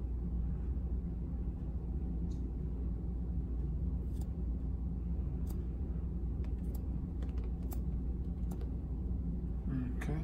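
Barber's shears snipping through a section of wet hair held between the fingers: several short, sharp snips, coming more often in the second half, over a steady low hum.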